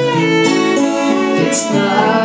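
Violin bowing a sustained melody over two acoustic guitars, in an instrumental passage between sung verses.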